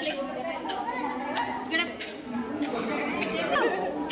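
Background chatter: several people talking at once in a large hall, with no clear words.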